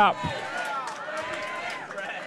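Faint voices talking in the background, quieter than the speech just before and after.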